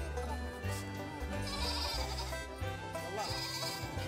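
A goat bleating twice, short wavering calls about a second and a half apart, over steady background music.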